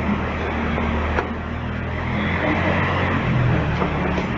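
A steady low hum under an even hiss, with a single click about a second in.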